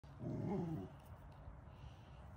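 A dog growling briefly during play with another dog, one short low growl lasting under a second.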